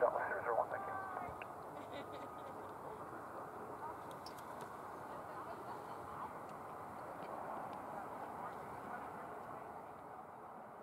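Air traffic control radio hissing on an open channel between transmissions, with faint traces of voices in the static. The tail of a pilot's taxi readback is heard in the first second.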